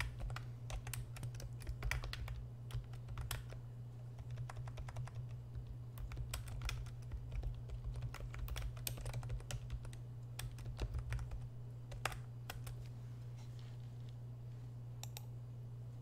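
Typing on a computer keyboard: quick, irregular keystrokes that stop about twelve seconds in, with a couple more a little later. A steady low electrical hum lies under them.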